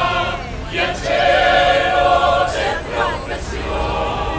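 Mixed choir singing a cappella, holding sustained chords that swell louder about a second in.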